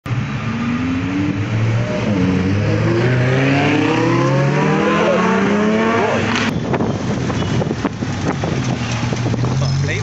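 Lamborghini Huracan Performante Spyder's V10 engine accelerating hard, its pitch climbing and dropping back several times as it shifts up through the gears. A sharp click comes about six and a half seconds in.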